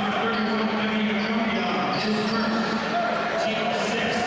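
Basketball being dribbled on a hardwood gym floor during play, with voices of players and spectators around it.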